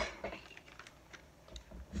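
A few faint, scattered clicks and rustles of a small plastic zip-top pouch being picked up and handled.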